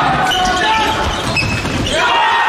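Handball match in a large sports hall: the ball bouncing on the court, short shoe squeaks on the floor, and players' and spectators' voices, all echoing in the hall.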